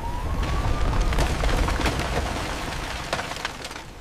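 Collapse sound effect: a deep rumble under a dense run of cracks and crashing debris, fading toward the end. A thin rising tone sounds in the first second.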